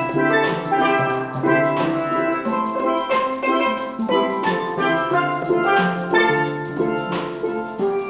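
A steel pan ensemble plays a melody and chords, with ringing metallic notes, backed by a drum kit keeping a steady beat. It is instrumental, with no singing.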